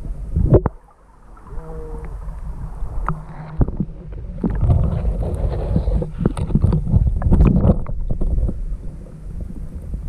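A camera handled in and under shallow stream water: a muffled low rumble with sloshing and irregular knocks and scrapes as it bumps along roots and cobbles.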